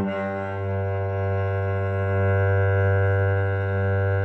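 Cello played on an open string with a long, slow bow stroke. A bow change right at the start briefly breaks the sound, then one steady low note is drawn through a full down-bow.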